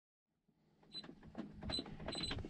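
Faint clicks and a few short, high-pitched electronic beeps over a low steady hum.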